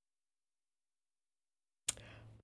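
Silence, then a single sharp click near the end, followed by a brief faint low hum that cuts off abruptly.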